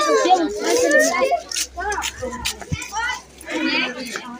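A group of children chattering and calling out over one another.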